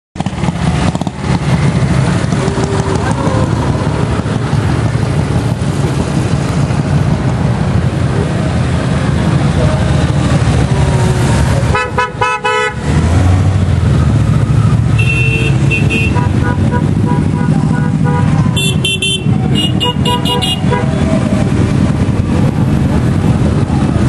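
Many motorcycle engines running together as a long column of motorcycles rides slowly past. Horns toot in short groups, once about halfway through and several more times near the end.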